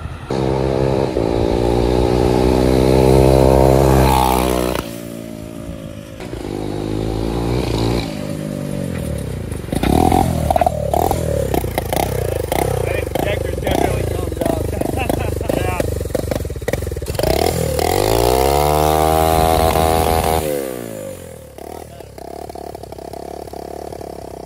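Turbocharged small engine of a home-built shopping-cart go-kart running and being revved. Its pitch climbs and drops again and again, with a long climb near the end that falls away to a lower, steadier running sound.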